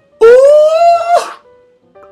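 A man's loud, high falsetto "ooh" that rises steadily in pitch for about a second and then breaks off, over faint music.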